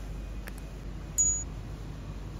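A faint click about half a second in, then a short high-pitched ding a little over a second in that fades quickly: the sound effects of a subscribe-button animation. Under them, a low steady rumble of room tone.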